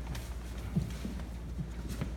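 A steady low hum with a few soft, short knocks scattered through it.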